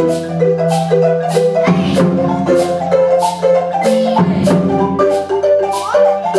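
Marimbas playing a fast, repeating melodic pattern over low notes that ring underneath, with sharp, bright strikes marking the beat roughly every half second.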